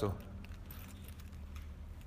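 Quiet room tone in a lecture hall with a low steady hum, right after the last syllable of a recited Arabic word.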